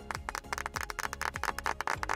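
A small group clapping in quick, uneven claps over soft background music.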